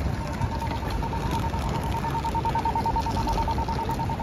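Pedestrian crossing signal beeping rapidly at one steady pitch while the walk signal is green, over city street noise.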